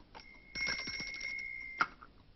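Small hand bell rung to summon a servant: one clear steady ringing tone with a fast rattle over it for about a second and a half, stopped by a sharp knock near the end.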